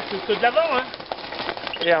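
Mountain bike tyres rolling over a loose, stony trail as a rider passes close by: a crackling crunch of gravel with irregular small clicks of stones, clearest in the second half.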